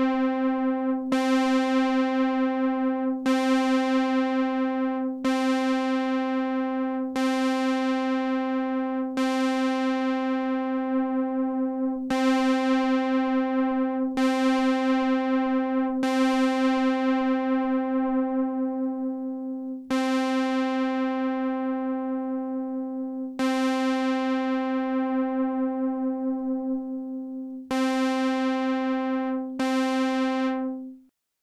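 A sustained synthesizer note at one pitch, struck again every two to four seconds, each strike bright at first and mellowing as it holds, played through a June-60 chorus pedal in its chorus II mode. The pedal's right internal trim pot is being turned meanwhile, shifting the chorus's speed and depth.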